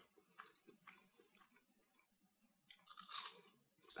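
Faint chewing of a crispy, batter-coated deep-fried burrito, with small crackles and a slightly louder burst about three seconds in.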